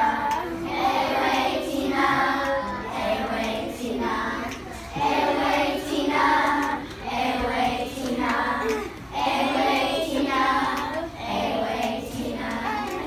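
A group of young children singing together, in sung phrases of about two seconds with short breaks between them.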